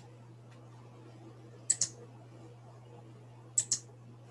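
Computer mouse clicks: two quick double-clicks, one about halfway through and one near the end, over a faint steady low hum.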